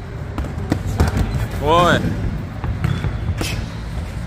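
Dull thuds of punches landing, several in quick succession within the first second and a half and another near the end, with a man crying out in pain between them.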